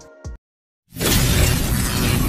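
Dead silence, then about a second in a loud, dense rush of noise begins and holds steady: the sound effect of an animated logo outro, with music underneath.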